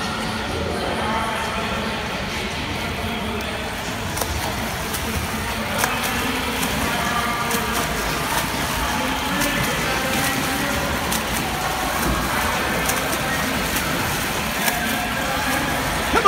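Steady noise of water splashing as a swimmer swims freestyle in an indoor pool, with faint voices in the background.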